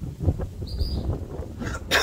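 Wind rumbling on the microphone, with a short high bird chirp just under a second in and a louder, sharper call near the end.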